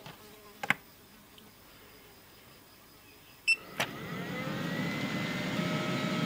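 ALLPOWERS S2000 power station's cooling fan spinning up as a load of about 900 W comes on, a steady whir that grows louder and rises slightly in pitch. It starts with a click and a short beep about three and a half seconds in, after a single click about a second in.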